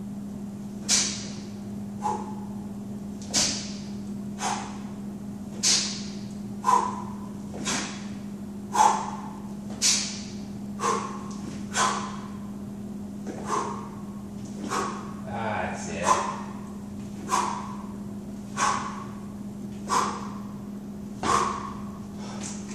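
A person doing lateral hops on a rubber gym floor, each hop making a short, sharp sound about once a second. A steady low hum runs underneath.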